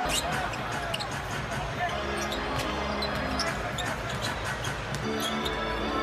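Arena music with heavy bass plays over the crowd in a basketball arena, with repeated short thuds of a basketball bouncing on the court.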